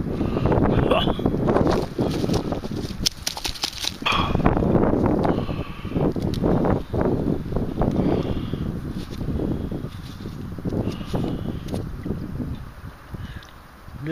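Wind buffeting the microphone, with scratchy rustling and scraping as fingers rub caked soil off a small dug-up metal find held close to the microphone.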